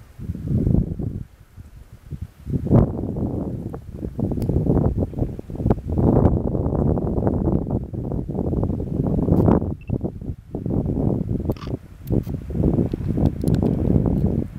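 Gusty wind striking the microphone: a low, irregular rumble that swells and drops in waves, starting suddenly and coming back in several gusts.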